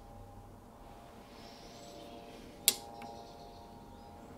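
Steady hum of a tool and cutter grinder in a workshop, with a single sharp metallic click about two-thirds of the way through as the milling cutter is handled at the tooth rest.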